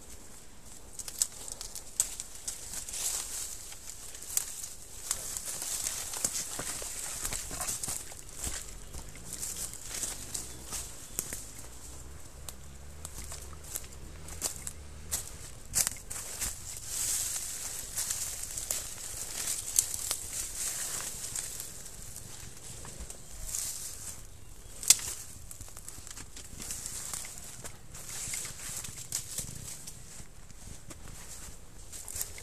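Leaves and branches rustling and snapping against a helmet camera as it pushes through woodland undergrowth, with scattered sharp knocks, the loudest about 25 seconds in, over a steady high hiss.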